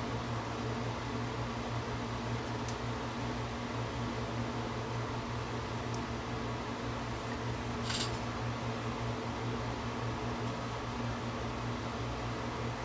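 Steady background hum of a fan or similar running appliance, with a low drone under it. A few faint light clicks come through as the microscope is handled and its focus adjusted.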